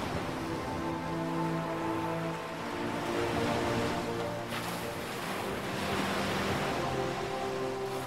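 Ocean surf washing onto a sandy beach, a steady rushing hiss of breaking waves. Soft background music of long held notes plays over it.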